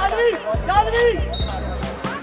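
A handball bouncing on a hard court as a player dribbles, a string of short thuds, mixed with girls' shouts from the court.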